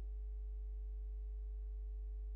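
Steady low electrical hum, like mains hum in a sound system, with fainter steady higher tones above it. It is unchanging and has no other event in it.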